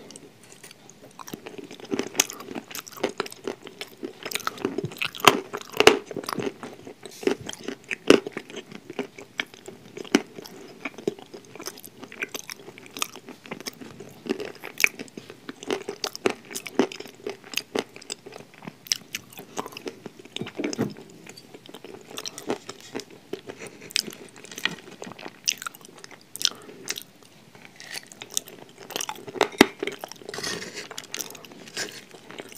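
Close-miked chewing of a mouthful of crunchy food: dense, irregular crunches and crackles with no let-up, loudest in the first third.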